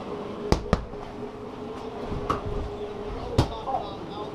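A few sharp clicks and knocks from handling things, two close together about half a second in and a louder one near the end, over the steady hum of a portable evaporative cooler's fan that fades out a little after three seconds.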